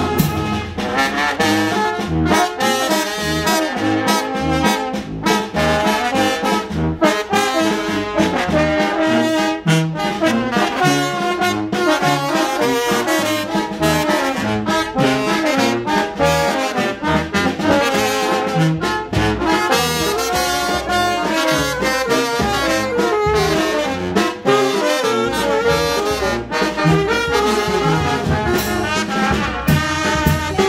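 A live street brass band of trombones, trumpets and saxophones playing a tune together over a steady low beat.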